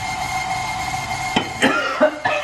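A steady mechanical hum, then a short cough near the end, brought on by the icing sugar dust that is rising from the bowl.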